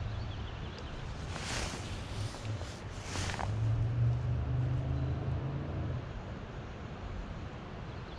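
Wind rumbling on the microphone, swelling in the middle, with two brief rustling swishes in the first half.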